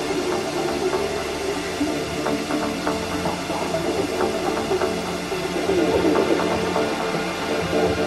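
Electronic dance music playing continuously as part of a DJ mix, with steady held tones throughout.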